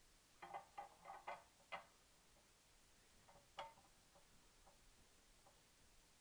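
Faint clicks and taps of the A&D GF-10K balance's metal pan support being set down and seated onto the balance: a quick run of clicks in the first two seconds, one sharper tap in the middle, then a few fainter ticks.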